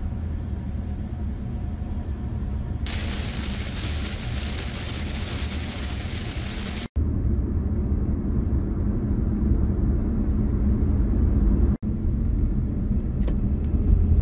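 A car driving on a road: a steady low engine and road rumble, with a louder hiss of tyre and road noise from about three seconds in until about seven. The sound breaks off abruptly twice, at cuts between clips.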